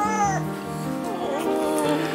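Newborn baby giving short mewling cries, one falling cry right at the start and another about a second in, over background music.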